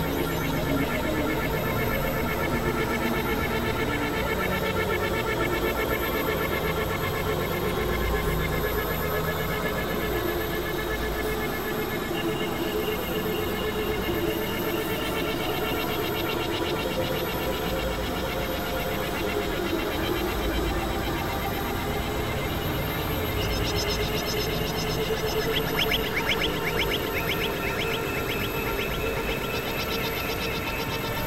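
Experimental drone music from Novation Supernova II and Korg microKORG XL synthesizers: dense layered sustained tones with a fast flickering pulse running through them. A higher pulsing layer joins about two-thirds of the way through.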